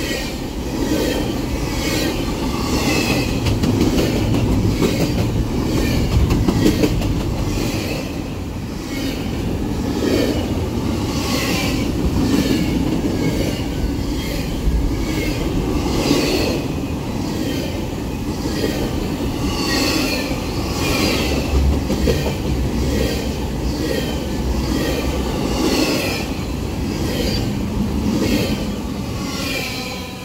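Double-stack intermodal freight train's well cars rolling past at close range: a steady rumble of steel wheels on rail, with a rhythm of high-pitched wheel clicks and squeals about once a second.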